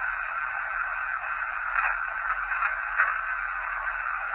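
Steady hiss from a Panasonic IC voice recorder playing a recording back through its small speaker, thin and tinny, as if heard over a radio. It is the silent stretch of the recording between a spoken question and a reply, with a faint click about three seconds in.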